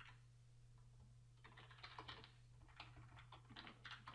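Faint computer keyboard typing: a short run of key clicks starting about a second and a half in, as HTML tags are entered.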